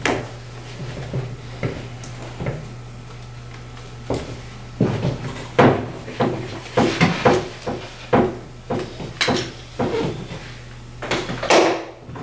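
Irregular metal clicks, rattles and knocks of a single-point sling harness being unclipped and taken off an AR-15 rifle, with a longer scrape near the end. A faint steady low hum runs under it.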